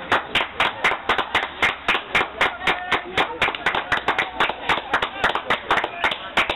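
Football supporters clapping in a steady rhythm, about four claps a second, with voices among them.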